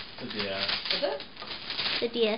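Wrapping paper crinkling and tearing as a small gift box is unwrapped by hand, with quiet voices in between.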